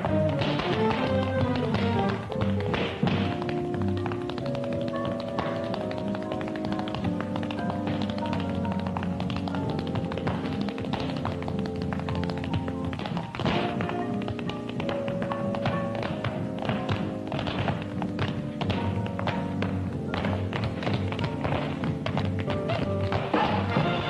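Tap shoes clicking out quick, dense footwork rhythms over a big band playing, with brass and drums.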